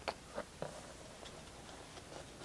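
A few faint clicks as a sleeved trading card is handled and set on a plastic display stand, three light ticks in the first second.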